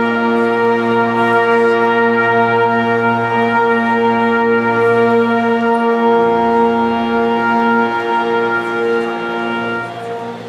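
Wind band of woodwinds and brass holding one long sustained chord, its bass part shifting about six seconds in, then dying away near the end.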